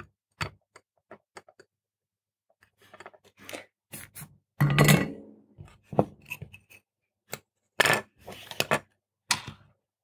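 Handling noise from a small printed circuit board being picked up, turned over and set down on a desk: scattered light clicks and taps, with a louder knock about five seconds in.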